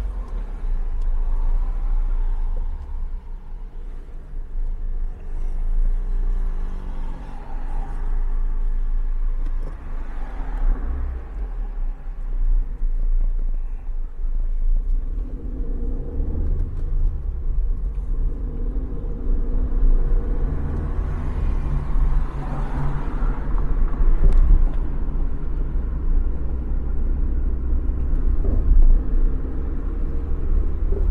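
Car engine and road rumble heard from inside the cabin as the car pulls out of a parking space and drives off. The engine note becomes clearer from about halfway through.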